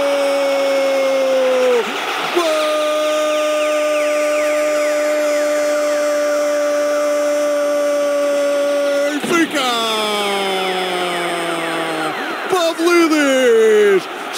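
A Portuguese radio commentator's drawn-out goal call, "golo!", one long vowel held on a single pitch, a quick breath about two seconds in, then held again for about seven seconds before sliding down in pitch, with a shorter falling shout near the end.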